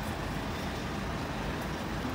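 Steady rumble of road traffic and urban street noise, even throughout with no distinct events.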